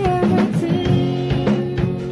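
Acoustic guitar chords with a drum kit playing a beat of sharp drum and cymbal hits under them. A woman's sung note wavers and ends about half a second in.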